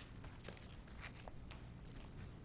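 Quiet room tone with a steady low hum and a handful of faint, sharp taps and clicks.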